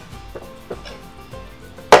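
A few faint metallic clicks from a wrench on the bolt of a styling chair's seat bracket, over soft background music. Near the end comes one loud, sharp metal clank as the wrench is set down on the floor.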